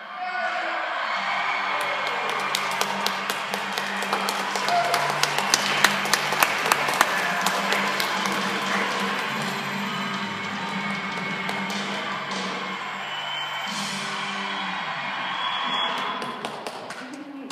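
Praise band music with long held chords and a quick run of sharp percussion hits in the middle.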